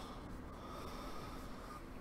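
Faint breathing through the nose of a man close to a microphone, with a thin steady tone in the breath that stops near the end.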